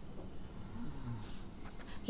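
Faint scraping of a steel spoon pushing crumbly steamed wheat rava puttu off a steel plate into a glass bowl.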